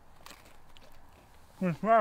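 A faint quiet stretch, then near the end a man's loud wordless vocal sounds, pitched and wavering, in reaction to the taste of fermented herring in his mouth.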